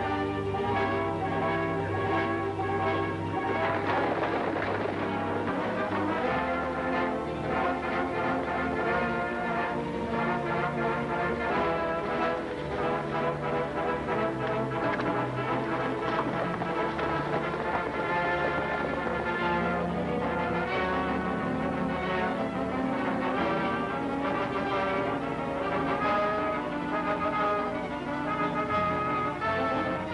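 Orchestral film score with prominent brass, playing steadily throughout.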